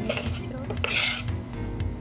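A spoon clinking and scraping against small glass dessert cups, with a click and a short scrape about a second in. Background music plays underneath.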